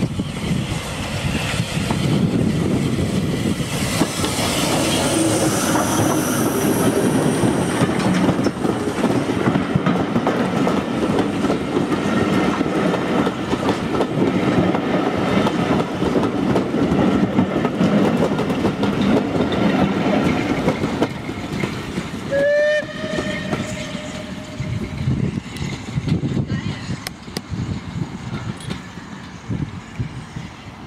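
Bulleid Battle of Britain class steam locomotive 34070 Manston, a three-cylinder Pacific, running past with its train: a steady rumble and the clatter of the coaches' wheels over rail joints, fading as the train draws away. About two-thirds of the way through there is one short steam whistle.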